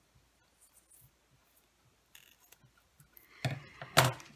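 Metal scissors cutting through a ribbon near the end, closing with a sharp snip, after a few faint handling rustles.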